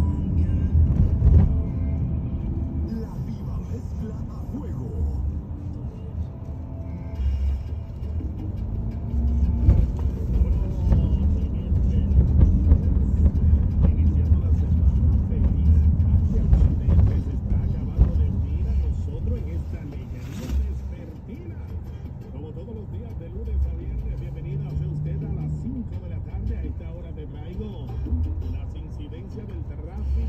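Steady low road rumble of a car driving, heard from inside the cabin, with a car radio playing music and talk underneath.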